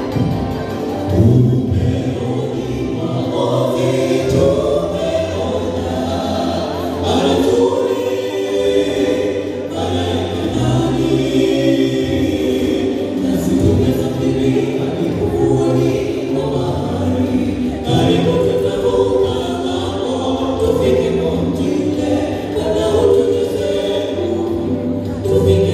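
A mixed group of men and women singing a gospel song together in harmony, amplified through handheld microphones.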